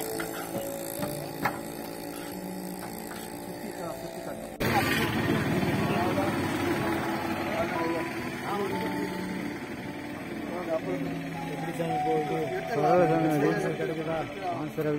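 Several people talking indistinctly, with a sudden jump in loudness about four and a half seconds in where the recording cuts.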